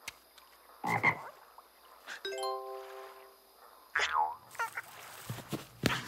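Cartoon sound effects and character noises: a short cry about a second in, a held multi-pitched tone near the middle, then a falling, whistle-like glide about four seconds in.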